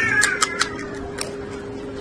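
Crisp crunches of a raw red chili pepper being bitten and chewed: several sharp crunches in the first half-second, then a few more spaced out. Right at the start a short high cry that falls in pitch is the loudest sound, and a steady low hum runs underneath.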